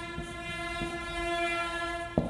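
A horn sounding one long, steady note that stops at the very end, with a few faint taps of a marker on a whiteboard.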